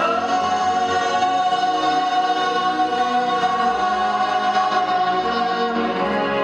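A choir singing long held chords over orchestral accompaniment, the notes sustained with little change in loudness.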